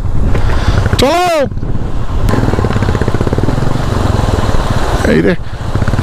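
Motorcycle engine running at low revs with a steady, rapid firing pulse, creeping through a rocky stream crossing; a man shouts once about a second in and calls out again near the end.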